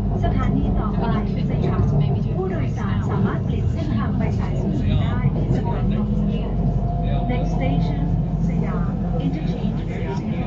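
Bangkok BTS Skytrain car running, heard from inside the car: a steady low rumble and hum, with people talking over it throughout.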